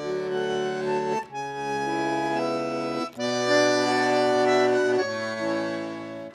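Bandoneon playing slow, sustained chords that change every second or two, with three brief breaks between phrases.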